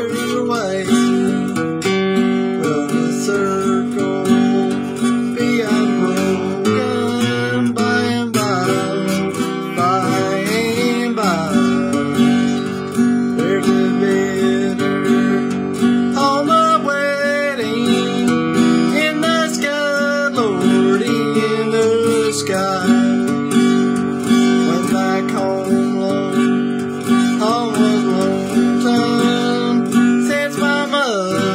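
A 1960s Harmony H1203 acoustic flat-top guitar strummed steadily with a flatpick, playing chords through a song.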